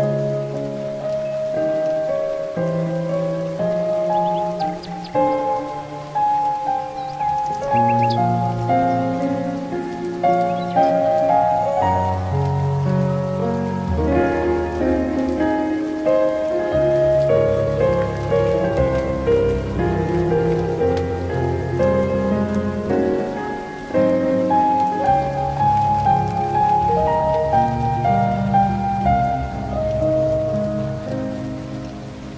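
Slow, calm solo piano music, with gently overlapping melody notes over held low notes.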